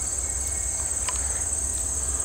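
Steady, high-pitched chorus of insects, a continuous shrill drone from summer grass and trees, over a low steady rumble.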